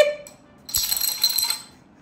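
Small plastic dominoes clattering as they are knocked over: a quick run of light clicks lasting under a second, starting about three-quarters of a second in.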